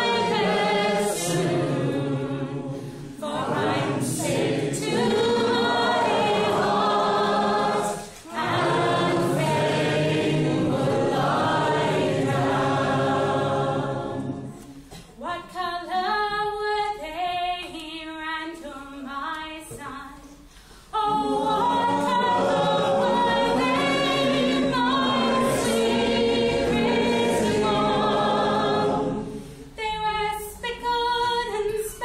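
Unaccompanied folk song: a woman's solo voice leading, with many voices in the room singing along on the chorus. About halfway through, the group drops away for several seconds of quieter solo singing before the full chorus comes back.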